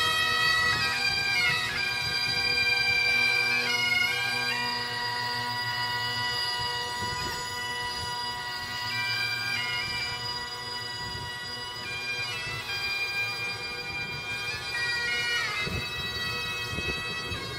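Highland bagpipes playing a slow tune, long held chanter notes over steady drones.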